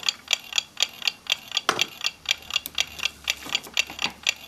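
A mechanical clock ticking steadily, about four ticks a second. About two seconds in there is a single sharper click.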